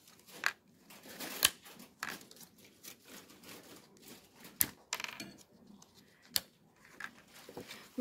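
Thin clear plastic blister packaging crinkling and clicking as small doll accessories are pushed and pried out of it by hand, with a few sharper snaps among the crackle.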